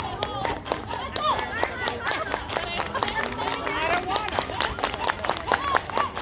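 A group of dancers clapping and stepping in a steady rhythm, with voices calling out over it.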